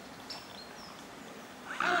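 Quiet outdoor background with a few faint, short, high bird chirps in the first second, then a man loudly shouting "Alan!" near the end.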